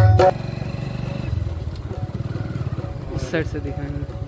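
A small motorcycle engine running as the bike is ridden along, a fast, even low pulsing. Background music cuts off just after the start.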